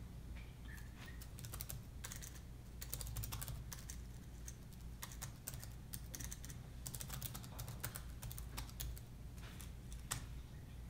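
Typing on an Apple MacBook laptop keyboard: quick runs of light key clicks in bursts with short pauses between them, over a low steady hum.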